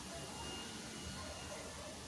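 Faint, steady background noise: an even hiss with a low hum and no distinct event.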